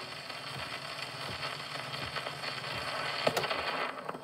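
Surface noise of a shellac 78 rpm record on an acoustic gramophone after the song has ended: the needle runs on in the groove with a steady crackle and hiss, and one sharper click comes about three seconds in.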